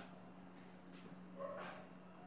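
Quiet room tone with a steady low electrical hum, and one brief, faint voice-like sound about one and a half seconds in.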